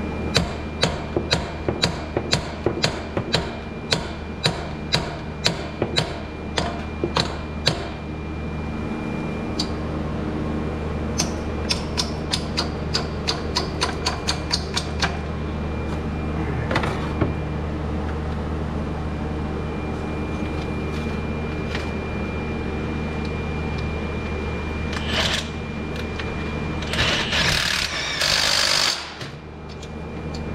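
Hand tools clicking on metal at the alternator mounting: a steady run of sharp clicks about two a second, then a quicker run a few seconds later, over a steady hum. A louder burst of rushing noise comes shortly before the end.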